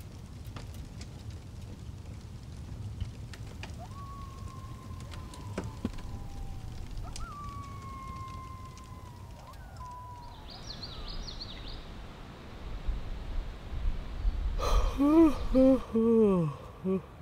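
Rain falling on a tent, with a steady low rumble and scattered drips, and a few faint drawn-out tones midway. Near the end a man gives a long, loud yawn.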